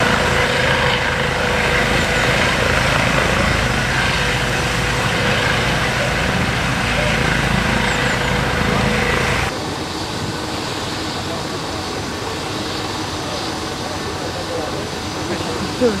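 Eurocopter EC135 air-ambulance helicopter hovering low: steady turbine whine and rotor noise. About nine and a half seconds in, the sound drops suddenly to a quieter steady noise.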